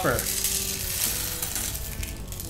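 Whole coffee beans pouring from a container into the bean hopper of a Breville YouBrew grind-and-brew coffee maker, a continuous rustle of beans sliding and landing on one another.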